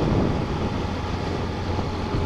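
Motorcycle cruising on the highway: steady engine drone with wind and road noise on the bike-mounted microphone.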